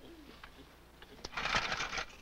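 Small gasoline pump engine being hand-cranked or pull-started: a short rattling burst near the end that dies away without the engine catching. A brief low gliding tone comes at the start.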